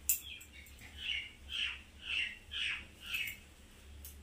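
A bird calling: five short calls in a quick series, about half a second apart, after a sharp click at the very start.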